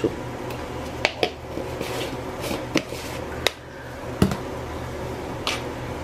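A handful of light clinks and taps of kitchen utensils against metal and crockery, the loudest a duller knock about four seconds in, over a steady low hum.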